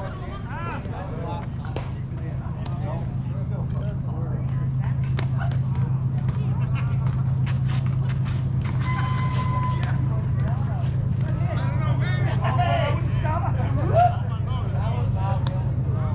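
Scattered distant voices of softball players talking and calling across the field over a steady low hum. A single sharp knock comes about two seconds before the end.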